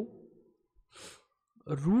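A man's short breath into a close microphone about a second in, between stretches of his speech.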